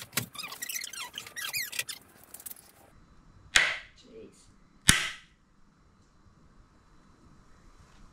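Two sharp metal clanks about a second apart, with short ringing, as a wrench is worked on the steel shaft of a long drill bit jammed in a timber beam. Lighter clicking and scraping come before them.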